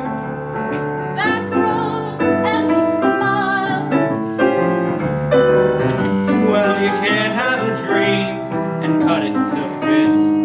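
Live singing with piano accompaniment: a duet in a lilting, old-fashioned popular-song style, the sung notes held with vibrato over steady piano chords.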